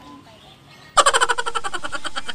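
A dubbed-in giggling sound effect, high-pitched and rapidly pulsing, starts abruptly about a second in.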